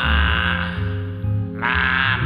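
A man singing over a karaoke backing track into an earphone microphone, holding a note with a wide vibrato that fades out about two-thirds of a second in, then starting the next line near the end.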